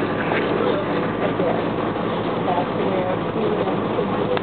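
Steady running noise of a SEPTA electric commuter train heard from inside the passenger car, with faint voices of people talking.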